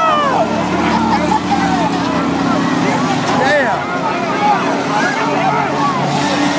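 Derby car engines running in a steady drone on the track, under the voices and shouts of a grandstand crowd.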